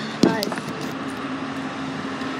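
A sharp knock from a hand bumping the recording phone about a quarter second in, followed by a steady low hum of car traffic outside the window.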